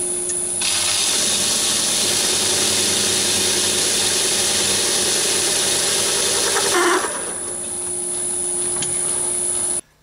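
Metal lathe running with a 10 mm end mill in the tailstock drill chuck, cutting a flat bottom into a bored hole in the spinning workpiece. A loud rasping cutting noise starts about half a second in and stops after about seven seconds. After that only the lathe's steady running hum is left, and it cuts off just before the end.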